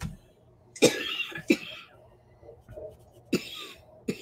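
A person coughing: two coughs close together about a second in, and one more near the end.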